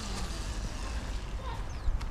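Wind and movement noise on a moving camera's microphone: a steady low rumble with an even hiss over it.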